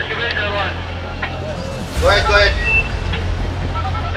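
A person's voice speaking in short phrases over a steady low rumble.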